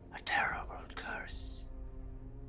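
A man's hushed, near-whispered voice speaking a short phrase, ending on a hiss, over soft sustained background music.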